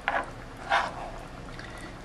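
A metal spoon basting pieces of stockfish with tomato sauce in a frying pan: two short wet slops of sauce, the second a little under a second in.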